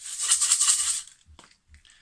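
Homemade kitchen shakers, a crisp tube and a small metal tin filled with dried grains, shaken in one brisk rattling burst of about a second, followed by a few faint rattles.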